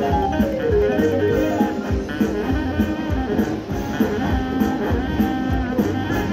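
Slot machine's bonus-round music: a plucked-string tune over a steady beat, playing while the free-game reels spin and the win total adds up.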